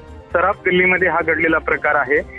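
A man speaking Marathi over a telephone line, thin-sounding, starting after a brief pause, over low background news music.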